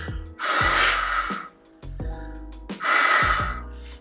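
Breath blown through a clarinet without sounding a note: two long rushes of air. It demonstrates the embouchure's air speed, which is stronger and more focused when the cheeks are not puffed.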